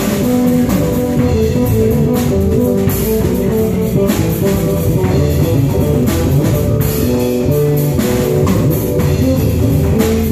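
Live fusion trio: an acoustic double bass and a fretted electric bass guitar playing interlocking low lines over a drum kit, with cymbal crashes struck several times.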